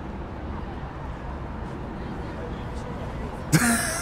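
Steady low outdoor background noise, then about three and a half seconds in a sudden, short vocal outburst from one of the men.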